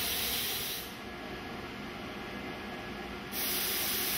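Two short bursts of loud, high hiss, each about a second long: one at the start and one a little past three seconds. Under them runs a steady background of low hum and hiss.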